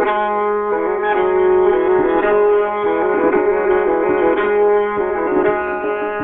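Santur, a Persian hammered dulcimer, played in the Dashti mode: rapid struck notes ringing on over one another, with tonbak drum strokes beneath.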